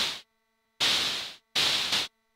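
Red noise from a Steady State Fate Quantum Rainbow 2 analog noise module, shaped by an attack-release envelope and VCA into percussive noise hits. A short decaying hit comes at the start, then two longer ones from just under a second in and at about a second and a half.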